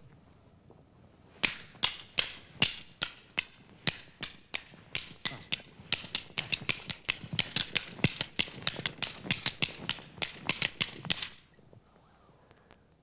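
Two pairs of rattan escrima sticks clacking against each other in a double sinawali partner drill. A run of sharp wooden clicks begins about a second and a half in, at two or three strikes a second, quickens to about five a second, and stops shortly before the end.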